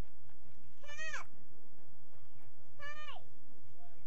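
A young child's voice making two short high-pitched calls, each rising then falling, about two seconds apart.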